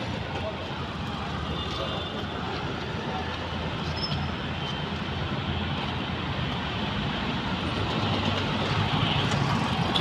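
Steady road traffic: vehicle engines running with a low hum under a wash of road noise, growing a little louder near the end.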